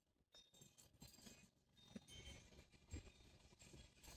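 Near silence, with a few faint brief scuffs from a hand working loose soil in a raised bed, the loudest about two and three seconds in.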